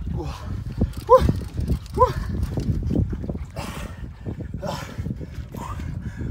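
A man gives two short, strained grunts about a second apart while hauling on a heavily bent fishing rod against a big fish, over a steady low rumble.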